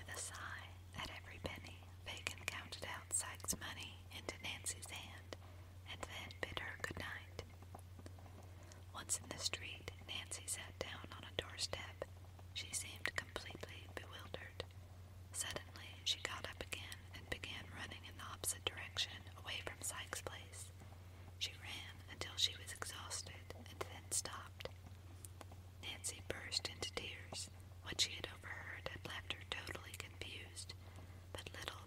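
Whispered speech: a story read aloud in a whisper, in short phrases with small mouth clicks, over a steady low hum.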